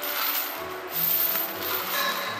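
Background music, with the metal chains hanging from a bench-press barbell clinking and jingling as the bar is pressed.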